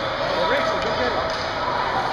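Ice hockey rink sound during play: indistinct voices from the stands and the ice over a steady hall noise, with faint knocks of sticks and puck on the ice.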